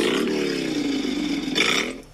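A woman's long, drawn-out, growly exclamation of delight. The held vowel sinks slowly in pitch, then turns up and ends in a hissed "sh" near the end, the tail of "oh my gosh".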